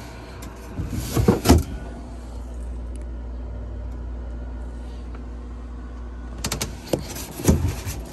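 Wooden bench-seat lid in a camping trailer's dinette being lifted open and later lowered shut: a cluster of knocks and rattles about a second in, and another from about six and a half to seven and a half seconds in, over a steady low hum.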